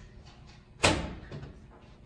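Heavy hallway door being pushed open, with one sharp clack from its latch about a second in and a short echo after it.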